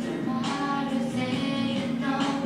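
A student's recorded singing of a pop song over an instrumental backing, played back in the room, with sustained sung notes.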